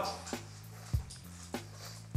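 A person swallowing beer from a glass: three soft gulps about every half second, over quiet background music.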